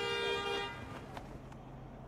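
A car horn held in one long steady blast that cuts off under a second in, leaving quieter street background.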